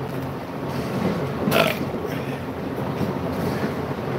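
A single short burp about a second and a half in, after a swig from a drink can. A steady low hum runs underneath.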